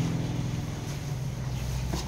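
A steady low motor hum with fast, even pulsing, like an engine running at idle, with some wind noise on the microphone.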